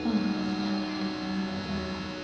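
Harmonium holding a steady low note over a sustained drone of steady overtones, accompanying a Raag Bihag vocal performance, with no singing over it.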